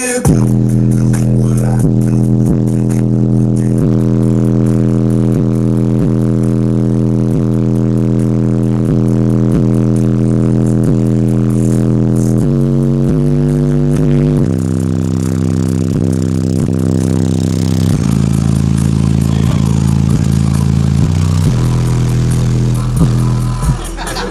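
A high-powered car audio system's subwoofers playing bass-heavy music very loud: long, sustained bass notes that shift pitch every few seconds over a steady beat.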